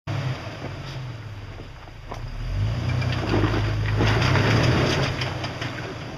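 Jeep Wrangler's engine running at crawling speed over rocks. It grows louder about two and a half seconds in and eases off near the end. Two sharp knocks come in the first couple of seconds.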